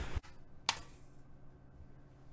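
Quiet room tone with a short low thump at the very start and a single sharp click about two-thirds of a second in.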